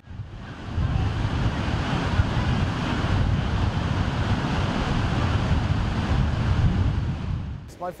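Surf breaking on a sandy beach, with wind buffeting the microphone as a steady low rumble. It fades in about a second in and fades out near the end.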